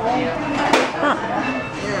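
People talking in a busy restaurant dining room, with one short sharp click about two-thirds of a second in.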